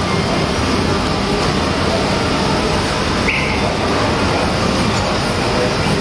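Steady loud rumbling noise, with a brief high tone a little over three seconds in.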